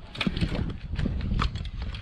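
Bicycle rolling on asphalt with an irregular string of sharp clicks and knocks from the bike, over a low wind rumble on the microphone.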